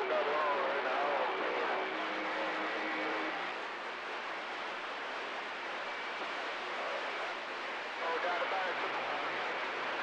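CB radio receiver hissing with band static, faint garbled voices of distant stations breaking through under the noise near the start and again near the end, with a few faint steady whistles.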